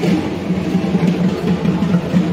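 Dhak drums beaten with sticks in a fast, dense, driving rhythm.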